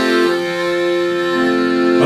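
Piano accordion playing sustained chords as an instrumental fill between sung lines of a folk song, changing chord shortly after the start and again about halfway through.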